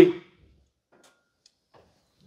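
The tail of a man's sentence spoken through a microphone, ending just after the start, then near silence: a pause in the speech.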